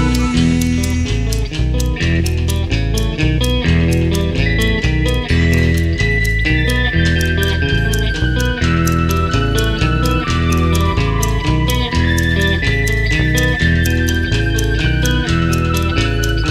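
A rock band playing an instrumental passage: electric guitar and bass guitar over a steady drum beat, with a sustained keyboard melody line.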